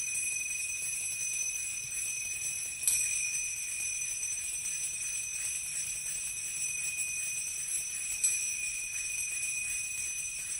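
Finger cymbals ringing in a sustained wash of high, overlapping tones, struck sharply again twice, about three seconds in and about eight seconds in.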